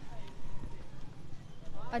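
Faint outdoor crowd and street background in a pause between speech: low noise with distant voices. A woman begins to speak near the end.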